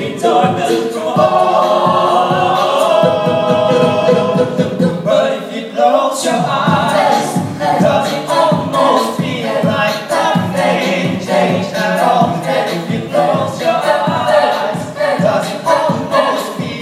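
An a cappella vocal group singing into microphones, amplified through the hall's sound system. It opens with sustained chords, and about six seconds in a steady vocal-percussion beat joins under the harmonies.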